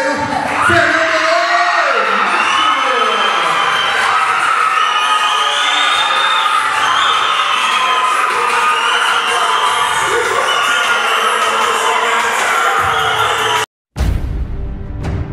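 Fight crowd cheering and shouting, full of high-pitched voices, as the bout's winner is declared; it cuts off abruptly just before the end.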